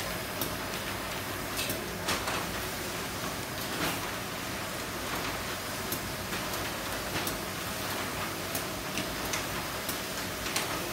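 Automatic paper bag making machine running: a steady mechanical hiss broken by sharp clicks every second or so, unevenly spaced.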